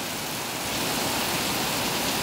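Heavy rain falling steadily on a flooded road, an even hiss that grows a little louder under a second in.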